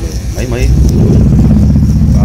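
A loud, steady low machine drone starts about half a second in, with voices over it.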